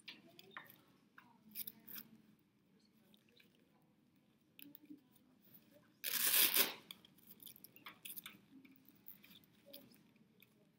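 Blood pressure cuff being wrapped around an upper arm: fabric rustling and small handling clicks, then the rasp of its Velcro strip about six seconds in, lasting under a second and the loudest sound here.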